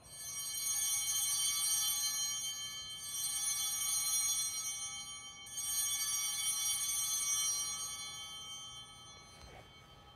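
Altar bells rung three times, each ring swelling and then fading over about three seconds, marking the elevation of the chalice at the consecration of the Mass.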